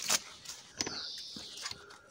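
Hands handling the leafy branches of a plum tree: a couple of soft clicks and faint rustling of leaves and twigs.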